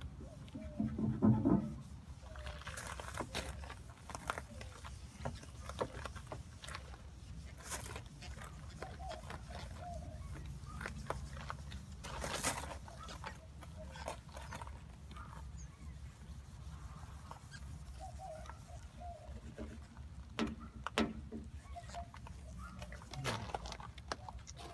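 A hand-held non-scratch scouring pad scrubbing window glass, in short irregular rubbing strokes that loosen the dirt.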